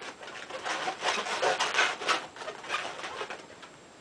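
Inflated latex modelling balloons (260 size) squeaking and rubbing against each other as they are twisted and the clear handle balloon is pushed in between the pinched bubbles of the mug. The squeaks come thick and irregular, then die away near the end.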